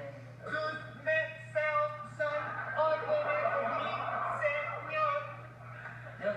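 A voice delivering a sing-song run of held, pitched notes, each about half a second long, over a steady low hum.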